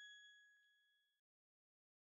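Near silence: the faint ringing tail of one high, bell-like note left over from the song's abrupt ending. It fades and cuts off a little over a second in, leaving dead silence.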